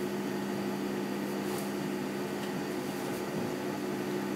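Steady low hum of a Toyota industrial sewing machine's electric motor running idle while nothing is being stitched, with faint rustling of fabric being handled.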